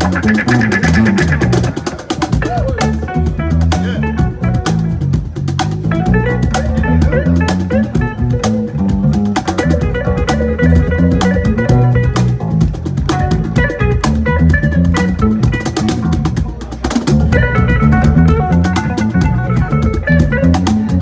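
Live improvised music from a handcrafted Lithuanian cigar box guitar, a large bass cigar box and a cajon: plucked guitar notes over a low bass line and a dense run of cajon strikes.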